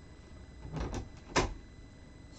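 Rubber stamp being handled on a Stamparatus stamping platform: a soft rustle a little before one second in, then a single sharp click about one and a half seconds in.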